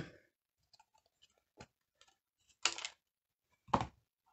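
Small plastic clicks and a few short knocks as a StazOn ink pad is handled and its lid and plastic insert are pulled off. The two loudest knocks come in the second half.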